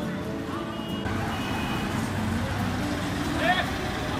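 Street background of traffic rumble and people talking, with a brief high-pitched wavering sound about three and a half seconds in.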